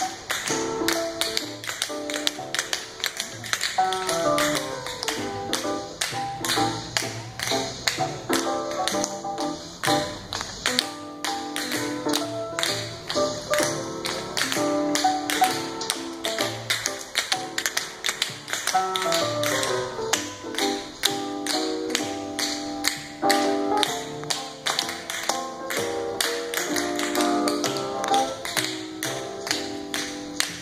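Tap shoes of three dancers striking a concrete floor in quick, rhythmic runs of clicks, in time with music.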